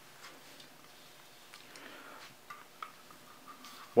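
Faint handling sounds: a few light clicks and a soft rustle as an all-in-one liquid CPU cooler's radiator, tubing and pump block are picked up off a cloth.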